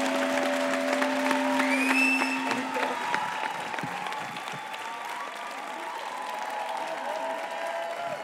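Audience applause filling a cinema hall, with a few held and sliding tones from voices or music over it, gradually fading towards the end.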